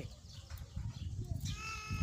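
A farm animal bleating, one steady high call that starts near the end, over faint outdoor background noise.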